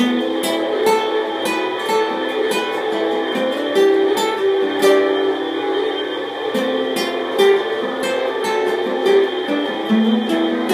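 Acoustic guitar played solo, a run of single plucked notes several a second over lower notes left ringing.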